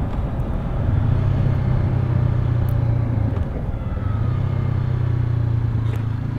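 Honda CB500F's 471 cc parallel-twin engine and exhaust running steadily on the move while the bike slows down, mixed with wind rush. The low engine note breaks off briefly about three and a half seconds in, then picks up again.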